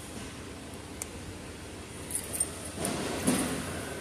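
Low store background hum with a soft click about a second in, then brief light jingling and clinking a little after two seconds and again near three seconds as small Christmas ornaments are handled on a store shelf.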